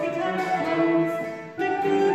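A small acoustic folk group playing a song together. The music drops away for a moment about one and a half seconds in, then comes back in at full level.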